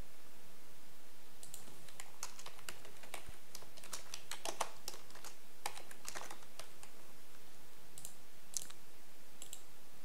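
Typing on a computer keyboard: a quick run of keystrokes starting about a second and a half in, then a few scattered clicks near the end.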